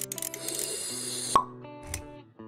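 Outro sting: a held chord with a hissing swish over it, then a sharp pop about one and a half seconds in and a short click just before the end.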